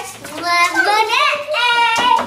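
A young girl's high voice singing a wordless, sliding tune, ending on a long held note.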